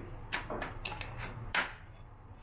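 Plastic housing of a Renpho air purifier being handled and turned over: a few short clicks and knocks, the loudest about one and a half seconds in.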